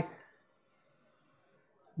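Near silence: faint room tone during a pause in speech.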